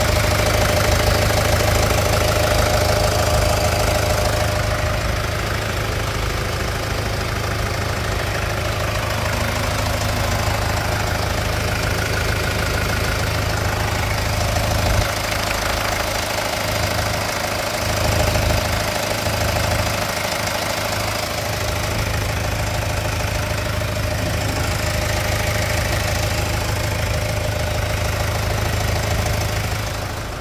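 Hyundai Tucson engine idling steadily, heard from underneath the car near the exhaust.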